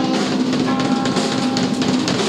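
Live pop-punk band playing loudly: rapid drum-kit hits on snare and bass drum, under a held, ringing electric guitar chord.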